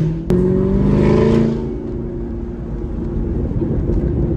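Supercharged 6.2-litre V8 of a 2019 Camaro ZL1 1LE with a Corsa Extreme cat-back exhaust, heard from inside the cabin under acceleration. A moment in, the pitch drops at a sharp click, as on an upshift of the manual gearbox. The note then climbs again for about a second before falling back to a lower, steady drone.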